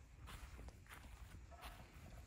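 Faint footsteps of someone walking, about three soft steps, over a low steady rumble.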